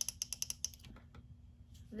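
A quick run of about a dozen small, sharp clicks within a second, then two or three single clicks, like a ratchet or a clicking knob being turned.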